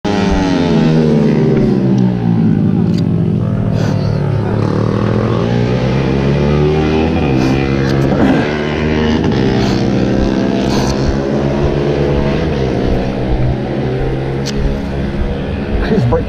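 Motorcycle engine running, its pitch drifting slowly down and up as the revs change, with a few short knocks over it.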